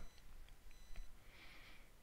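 Very faint room tone with a thin, high-pitched electronic tone in the first second and a few faint ticks.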